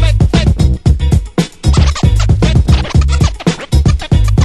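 Remixed dance track with a steady beat and heavy bass, cut with DJ turntable scratching.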